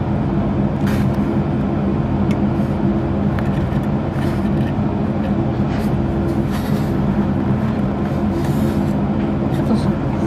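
A steady low mechanical hum, like a motor or fan running.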